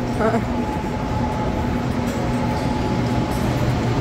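Steady hum and fan noise of KTX high-speed trains at a station platform: a low drone with a faint steady high tone above it.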